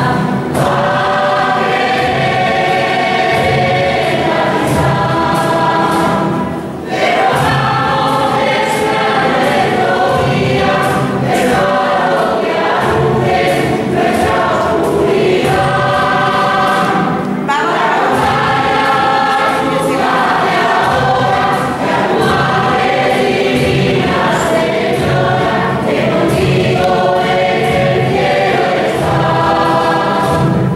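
Many voices singing a hymn together at Mass. They sing in long held phrases, with brief pauses for breath about 7 and 17 seconds in.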